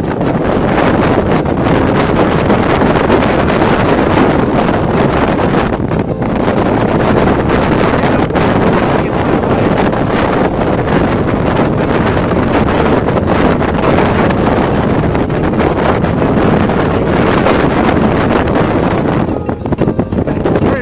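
Howling wind buffeting the camera microphone: a loud, steady rush of noise with a few brief dips.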